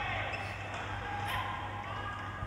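Badminton rally on an indoor court: rackets striking the shuttlecock a few times and players' shoes squeaking on the court floor.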